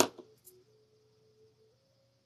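A single sharp click, then a faint steady tone that shifts in pitch a few times.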